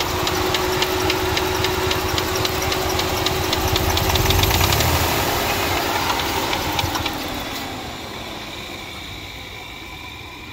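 Chrysler 3.8L V6 running rough at idle with a regular knock, about four a second; the engine knocks without setting a misfire code. The sound grows quieter over the last few seconds.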